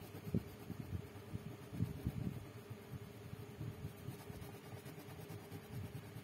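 Coloured pencil shading on paper: quick, irregular back-and-forth scratching strokes as green is laid into a drawing.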